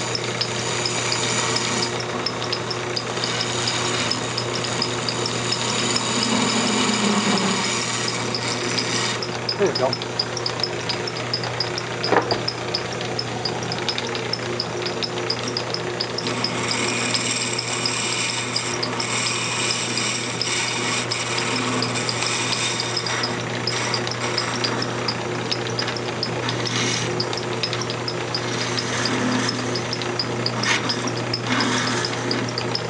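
Wood lathe running with a steady motor hum while a long-handled scraper hollows the inside of a small turned box, the cutting noise swelling and easing as the tool moves along the wall. A couple of sharp knocks come about ten and twelve seconds in.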